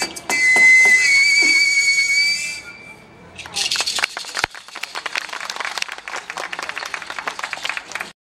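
A long wooden folk pipe holds a high, breathy whistling note that steps up slightly about a second in and stops before the three-second mark, ending the piece. After a short pause, an audience applauds.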